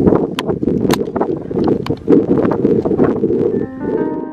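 Heavy wind buffeting on the microphone, with scattered sharp clicks and rattles over it. Soft piano music comes in near the end.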